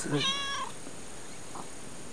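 Tortoiseshell cat giving one short, high meow, an affectionate "an", a fraction of a second in, while it seeks attention.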